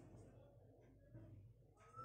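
Faint whiteboard marker squeaking and rubbing as a line is written, over a steady low electrical hum.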